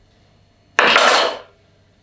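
A plastic knife cutting through a wedge of green apple: one loud burst of noise about a second in that starts suddenly and fades out within under a second.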